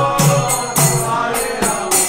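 Devotional kirtan chanting: voices singing a mantra over a hand drum and small hand cymbals struck in a steady rhythm.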